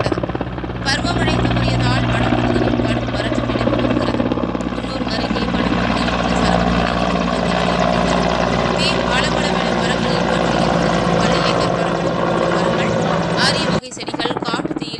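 Helicopter flying overhead: a steady beat of its rotor blades over the drone of its engine, loud throughout.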